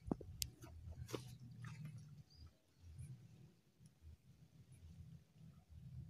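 Near silence: a faint, uneven low rumble with a few soft clicks.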